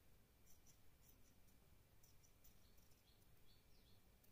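Faint series of snips from scissors cutting through a strip of thin fabric, with short dry crunches of the blades closing.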